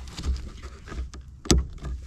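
The red locking clip on a Jeep Wrangler TJ wiper motor's electrical connector snapping open with one sharp click about one and a half seconds in, as a flathead screwdriver twists it to unlock the connector. A fainter tick comes just before it.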